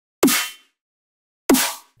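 A processed snare drum sample played twice, about a second and a quarter apart, each hit with a sharp attack and a short, slightly falling metallic ring from Ableton's Corpus resonator in plate mode, its inharmonics turned up.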